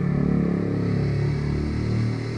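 A motorcycle passing by, its engine a steady low drone about as loud as the speaking voice.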